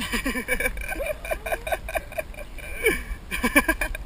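Excited human laughter, a long run of short giggles rising and falling in pitch, over a steady low rumble.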